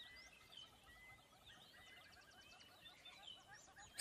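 Near silence with faint background birdsong: scattered chirps and short whistles.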